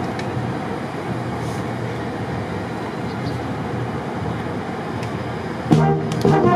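Steady urban traffic hum. Near the end a school wind band comes in loudly with brass notes, opening the number.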